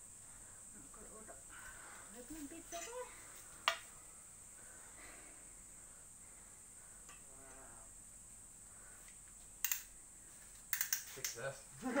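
Faint, low voices of people talking in the background. A single sharp click about four seconds in, and a quick run of clicks near the end, over a thin steady high-pitched hiss.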